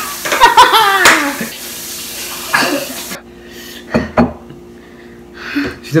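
A man laughing hard and loudly over water running from a faucet; the running water cuts off suddenly about three seconds in, followed by a couple of short knocks.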